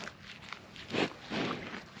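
A Scottish Highland calf eating hay close to the microphone: two short sounds of munching and hay being pulled, about a second in and again half a second later.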